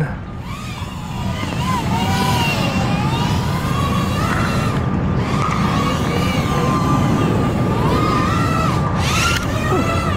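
BETAFPV Air75 tiny whoop's 0802 brushless motors and two-blade props whining. The pitch rises and falls constantly as the throttle is worked during aggressive flying, on a prop that has been bent and chipped in a crash. A short rush of noise comes near the end.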